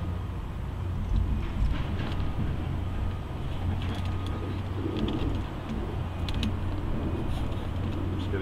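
Outdoor background: a steady low rumble of road traffic, with a low dove-like coo about five seconds in and a few light clicks.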